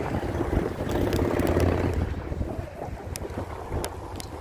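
Wind buffeting the microphone, a dense low rumble that eases after about two seconds, with a few small clicks near the end.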